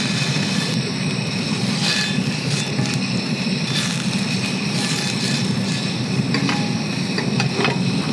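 Beef tallow sizzling as it is rubbed over a hot iron frying pan, over a steady low roar from the heat below, with a few light clicks of the metal fork on the pan.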